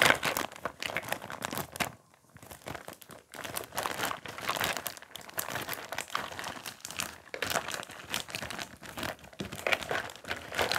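Clear plastic packaging bag crinkling as hands squeeze and handle it, in dense irregular bursts, with a brief pause about two seconds in.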